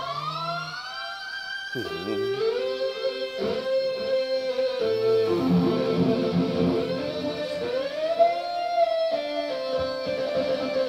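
ROLI Seaboard playing a distorted electric-guitar lead sound, with sustained notes bent and slid in pitch the way a guitarist bends strings. About two seconds in, a note plunges steeply and swoops back up, and near the end a note slides upward.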